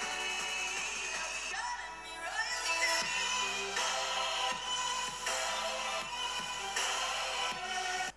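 A song played at full volume through the Xiaomi 15 Ultra smartphone's built-in loudspeaker, heard across the room. The music stops right at the end.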